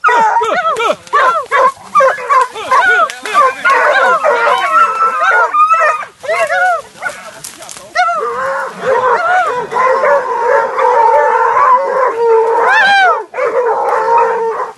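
A pack of hunting dogs barking and yelping rapidly as they fight a collared peccary cornered in a burrow. From about halfway on, the barks give way to longer, wavering baying cries.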